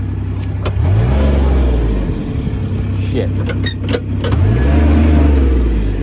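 Kubota RTV 900's three-cylinder diesel engine revved up twice, about a second in and again past four seconds, rising and holding at high revs each time as the stuck vehicle tries to drive out.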